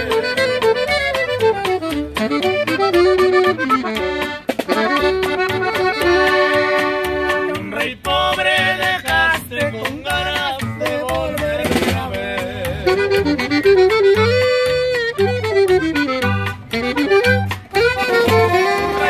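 Norteño band playing an instrumental break: a button accordion carries the melody in quick runs, over acoustic guitar strumming, an upright bass (tololoche) plucking a steady bass line and a snare drum keeping the beat.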